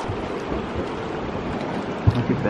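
Steady rush of fast river water around a drift boat, with wind buffeting the microphone in irregular low gusts.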